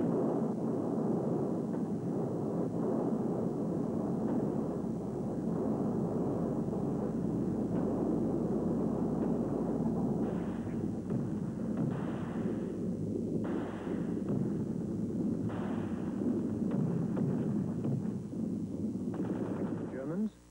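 Battle soundtrack of continuous rumbling gunfire and artillery, with several sharper, louder blasts in the second half.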